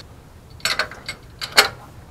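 A hand wrench clinking against metal at the engine's crankshaft damper: a short cluster of clicks about half a second in, then one sharper clink about a second and a half in.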